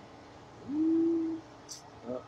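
A voice humming one short, low, steady note under a second long, rising slightly at its start. A faint click comes near the end.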